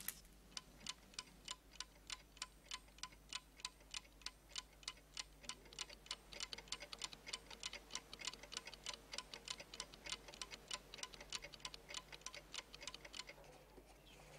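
Several mechanical twin-bell alarm clocks ticking quietly, at first one even tick of about three a second, joined about five seconds in by more ticks out of step with it. The ticking stops shortly before the end.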